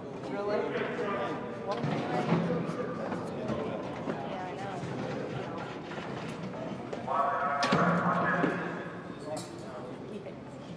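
Indistinct voices of several young men talking and calling out in a reverberant hallway, with one loud call about seven and a half seconds in.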